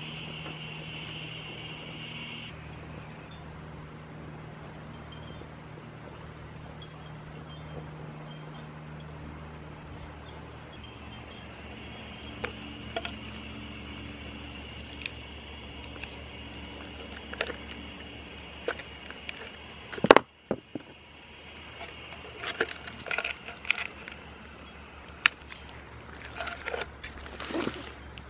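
Handling noise from a plastic pot liner stuck inside a hardened mortar flower pot being worked loose by hand. There are scattered clicks and scrapes, one sharp loud knock about two-thirds of the way in, and then a busier run of clicks and scrapes toward the end, over a steady faint outdoor hum.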